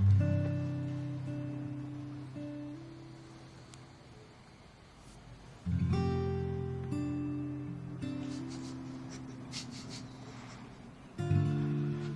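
Background music: slow acoustic guitar chords, each struck once and left to ring out, a new chord about every five and a half seconds, with a few single notes moving above them.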